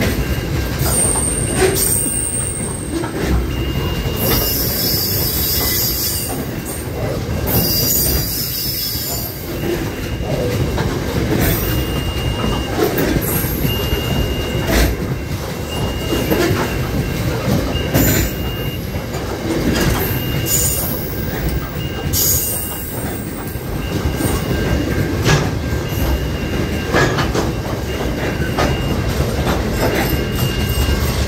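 Long freight train of covered hopper wagons rolling steadily past close by: a continuous rumble with wheels clicking over rail joints, and a high thin wheel squeal that comes and goes, with brief sharper squeals every few seconds.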